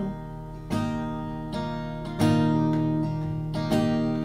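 Acoustic guitar strummed with no voice: a few chords, each struck and left to ring before the next.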